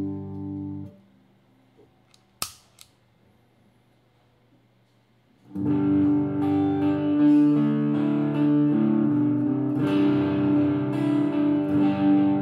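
Electric guitar (Gibson Les Paul with EMG 81/85 pickups) through an Engl Classic tube combo: a chord rings with the pedal bypassed and is cut off about a second in. About two and a half seconds in there is a sharp click from the footswitch of the Mad Professor Stone Grey Distortion pedal. From about five and a half seconds, distorted chords and riffs are played through the pedal.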